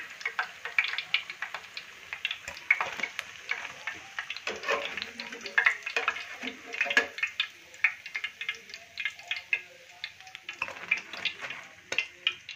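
Besan pakoras deep-frying in hot cooking oil, sizzling with dense, irregular crackles and pops, while a wire-mesh skimmer scrapes and lifts them out of the pan.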